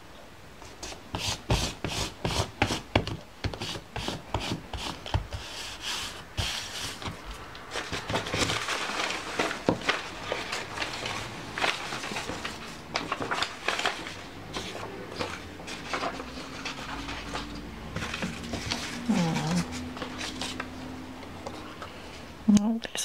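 Paper being handled and pressed down by hand on a desk: a run of quick taps and crinkles, then a stretch of denser rustling and rubbing as glued scraps are smoothed flat.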